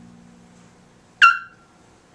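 A bowed double bass note fading away, then just past halfway a single short, high, sharp-edged note that rings briefly and dies, in a free-improvised passage.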